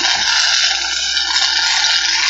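A loud, steady rushing noise like running water, cutting in abruptly.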